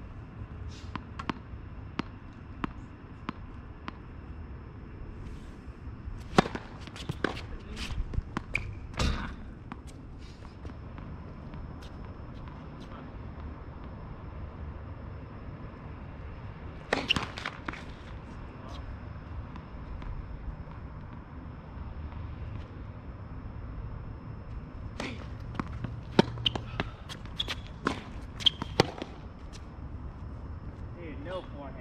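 Tennis balls struck by rackets and bouncing on the court during rallies: sharp pops in clusters a few seconds in, around the middle, and again near the end, over a steady low rumble.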